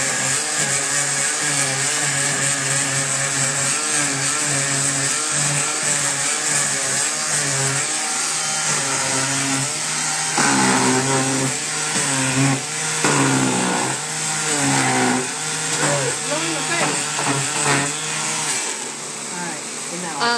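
Handheld electric sander running against a painted dresser, a steady motor hum with a scratchy sanding noise as it is worked over the edges and carved panels to distress the fresh paint. The sander stops near the end.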